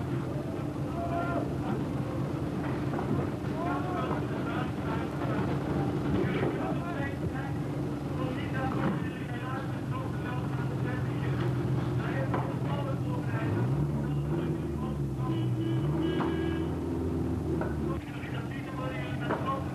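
Indistinct voices over a steady low hum, with a low drone that rises and falls in pitch about fourteen seconds in.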